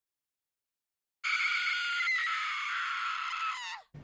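A woman's high-pitched scream, held for about two and a half seconds and trailing off downward at the end, after about a second of dead silence.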